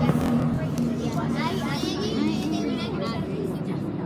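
Inside a moving bus: the engine drones steadily, and background passengers' voices chatter over it.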